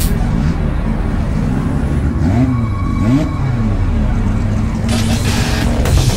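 Race car engine idling with a lumpy rumble, its revs blipped up and back down twice in quick succession about two and a half to three seconds in.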